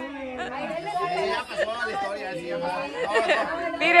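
Several people talking over one another: lively group chatter with no single clear voice.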